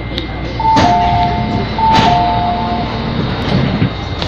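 MTR train door-closing warning chime: a two-note descending chime sounded twice in a row over the steady running hum of the train, with a few knocks near the end.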